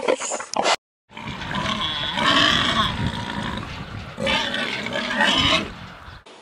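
Pigs giving loud, drawn-out calls in two long bouts, the first starting just over a second in and the second a little past four seconds.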